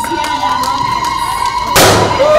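A steady high tone held through, with a single loud bang near the end.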